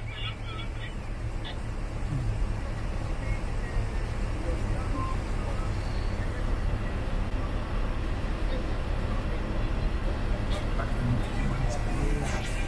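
Steady low rumble of a vehicle's engine and road noise heard from inside the cab, with the driver's window open.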